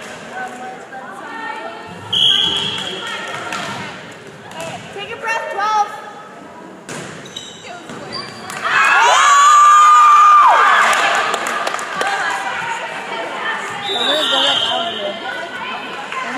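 Volleyball rally in a gym: a referee's whistle about two seconds in, the ball struck and landing several times as sharp knocks, and spectators' voices. Near the middle comes one long, high-pitched shout, the loudest sound. A second whistle comes near the end.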